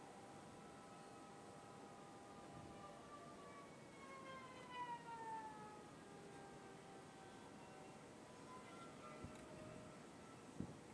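Near silence, with a faint distant siren whose pitch slowly falls about halfway through.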